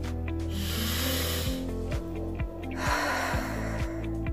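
A woman demonstrating slow, deep breathing: in through the nose and slowly out through the mouth, two audible breaths of about a second each, over soft background music.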